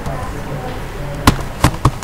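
Computer keyboard keystrokes: a few sharp, loud key clicks in the second half, as a command is entered and the Enter key is struck repeatedly over a low background hum.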